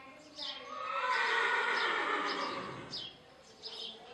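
A horse whinnying: one long, loud call of about two seconds that falls in pitch at its end. Birds chirp repeatedly in the background.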